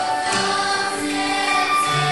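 A congregation singing a hymn together, holding long notes, with a band of acoustic guitar, keyboard and drums accompanying.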